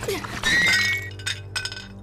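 A bowl is swept off a table and crashes to the floor. The crash is loudest about half a second in and rings briefly, followed by a couple of smaller clinks as it settles.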